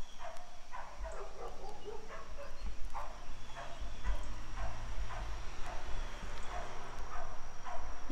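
Short animal calls repeated again and again, a few each second, with no words between them.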